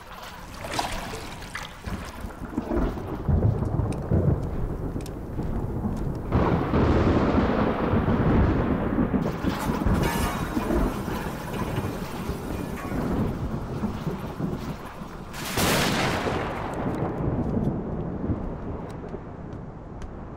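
Fantasy film sound effects for a spell being cast: continuous low rumbling that swells about six seconds in, with a sharp whoosh about fifteen seconds in.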